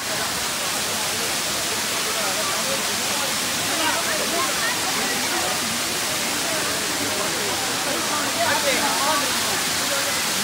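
Kiliyur Falls pouring down a steep rock face close by: a steady, unbroken rush of falling water. Faint voices of people come through it about four seconds in and again near the end.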